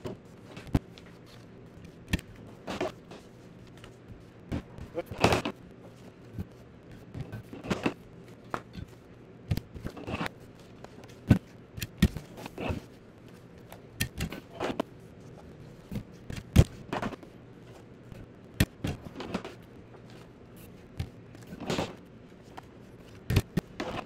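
Long-reach stapler driving staples through the spines of folded paper booklets: a dozen or more sharp clunks at irregular intervals, mixed with the rustle and slap of paper being handled and lined up.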